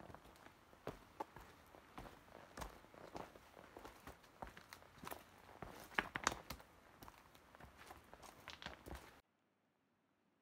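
A hiker's footsteps on a rocky trail: irregular boot steps scuffing and knocking on rock and gravel, loudest about six seconds in. They cut off suddenly near the end.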